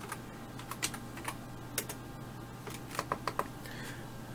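Typing on a computer keyboard: scattered key clicks at an uneven pace, with a quick run of several about three seconds in, over a steady low hum.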